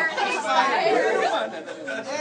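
Only speech: several people talking over one another.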